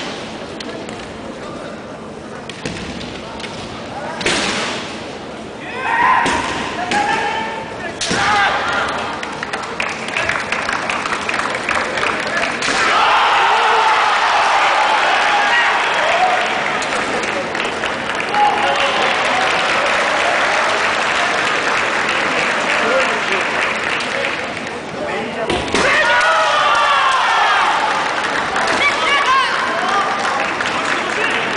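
Kendo fencers' long, drawn-out kiai shouts, broken by sharp knocks from bamboo shinai strikes and stamping feet on the wooden floor. A hard strike comes about three-quarters of the way through, followed by more shouting as a point is scored.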